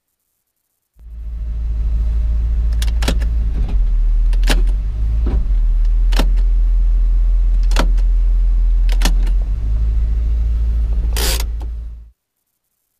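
1956 Chrysler Imperial on the move, heard from inside the cabin: a loud, steady low rumble of engine and road, with a handful of sharp clicks and a short hiss near the end. It cuts in about a second in and stops abruptly.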